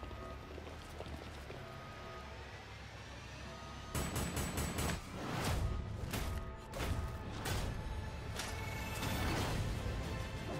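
Action movie trailer soundtrack: a low, steady music bed, then from about four seconds in a rapid series of sharp hits and crashes over the music.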